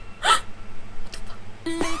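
A brief, sharp vocal sound falling in pitch about a third of a second in, over quiet music. Laughter starts at the very end.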